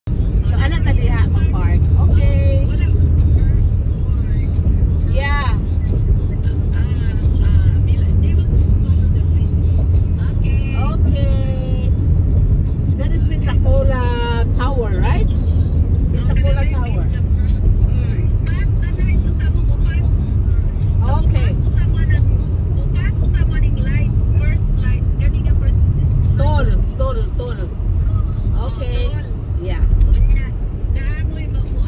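Steady low road and engine rumble inside a moving car's cabin. Voices rise over it now and then.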